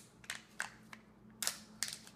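Foil seal being peeled off the plastic half of a Kinder Joy egg: a few short, sharp crinkles and rips, spread out.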